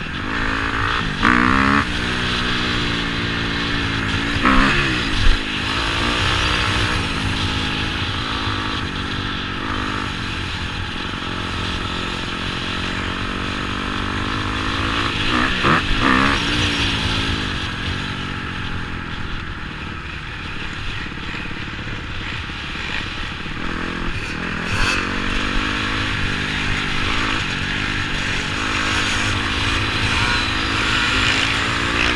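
Dirt bike engine running while being ridden, its pitch rising and falling over and over as the throttle is opened and closed and gears change, over a steady low rumble.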